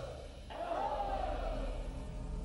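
A group of men chanting a war cry in unison, one long cry that swells and falls away, beginning about half a second in after a previous one fades.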